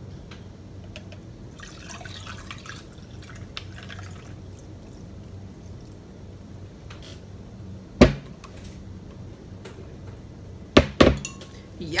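Kool-Aid poured from a plastic pitcher into a glass of ice, a soft pouring sound. One sharp knock comes about eight seconds in and two more close together near the end.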